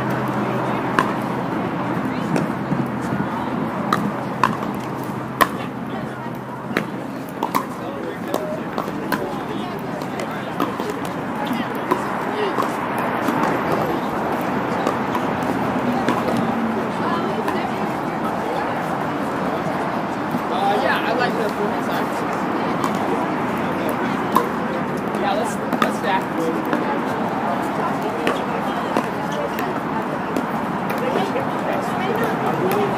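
Many people talking at once, a steady murmur of voices, with scattered sharp pops of pickleball paddles hitting the ball on nearby courts.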